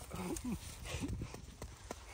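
Quiet handling sounds: a few soft, sharp clicks scattered through the stretch over low background noise, with a faint, low murmur of a voice in the first half second.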